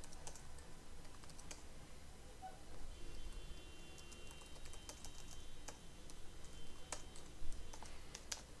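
Faint, irregular keystrokes on a computer keyboard.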